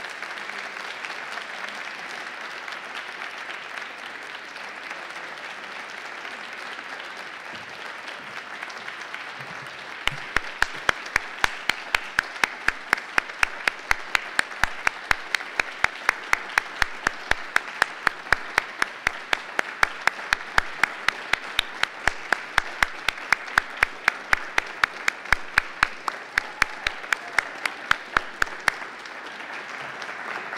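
Audience applauding steadily. From about ten seconds in, one person claps close to the microphone, loud sharp claps about three a second on top of the crowd's applause, stopping shortly before the end.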